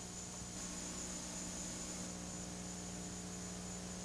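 Faint, steady electrical hum with a layer of hiss: the background noise of an old recording, with nothing else happening.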